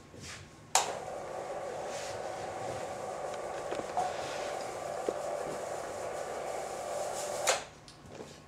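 Electric motor of a roll-down projection screen running as the screen lowers: a steady hum that starts with a sharp click about a second in and stops abruptly near the end, after about seven seconds.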